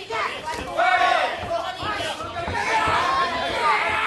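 Several voices at ringside shouting over one another at a kickboxing bout, calling out to the fighters, with a few faint thuds of blows landing.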